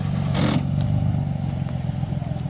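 Engine of a screw-propelled auger-drive vehicle running steadily with an even low throb as the vehicle drives over rough ground. A brief rushing noise comes about half a second in.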